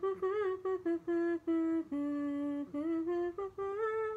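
A person humming a melody with no accompaniment: a quick run of short, separate notes, the pitch climbing over the last second and ending on a held higher note.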